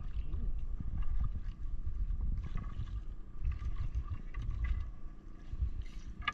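Water lapping and sloshing against the hull of a small wooden outrigger canoe at sea, with an irregular low rumble of wind on the microphone and light rustling of the net being handled.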